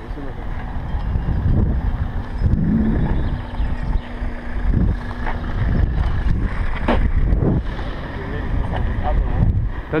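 Wind buffeting the microphone of an action camera on a moving bicycle, a loud, gusty low rumble, with a few brief indistinct voice fragments.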